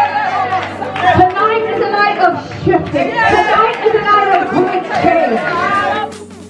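A woman's voice amplified through a handheld microphone in a large room, in continuous loud phrases over a steady held music chord.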